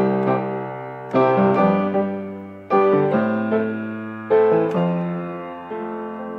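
Piano playing slow, sustained chords with no singing: a new chord is struck about every one and a half seconds and left to ring and fade, the last one softer.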